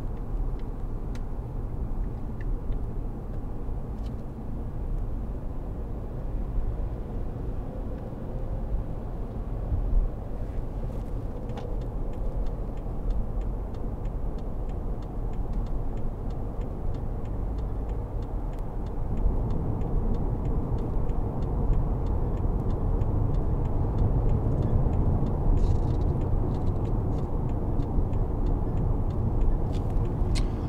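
Inside the cabin of a BMW 520d, a 2.0-litre four-cylinder turbodiesel saloon, cruising at motorway speed: a steady low rumble of engine and road noise. It grows louder about two-thirds of the way through.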